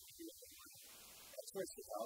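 Low electrical mains hum through a microphone and sound system, under faint, indistinct speech, with a brief hiss about a second in.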